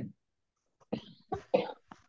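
A person coughing: a few short coughs starting about a second in.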